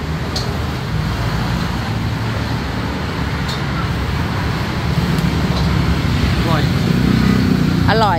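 Steady road traffic, with the low rumble of engines, growing louder in the second half. A brief voice comes in near the end.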